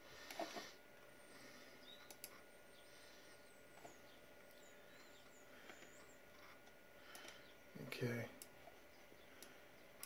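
Near silence: room tone with a few faint computer-mouse clicks and some faint high chirping.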